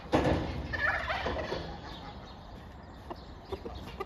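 Domestic turkey tom gobbling in the first second and a half, a rapid rattling call, with quieter farmyard bird calls after it.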